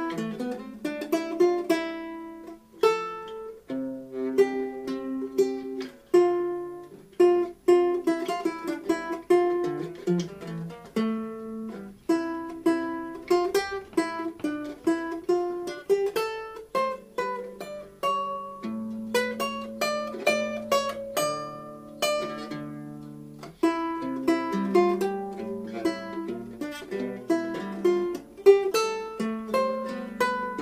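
Solo vihuela de mano played by hand: plucked chords and running melodic lines over bass notes, each note ringing and decaying, in a Renaissance pavane.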